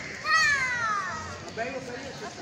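Children's voices in the open air, with one child's high call falling in pitch for under a second just after the start.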